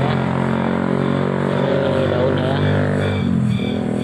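A motor engine running steadily, its pitch sliding down about three seconds in as it slows.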